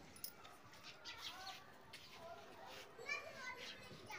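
Faint distant voices, children among them, calling and chattering in short bursts in the background.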